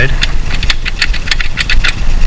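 A quick, irregular run of small clicks and taps from hands working at a cabinet drawer's slide release tab, over a steady low hum.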